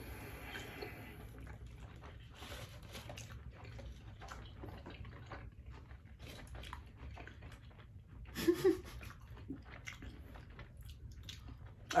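Faint, wet chewing of a vegan burger, with small irregular mouth clicks and smacks, and a short hummed sound about eight and a half seconds in.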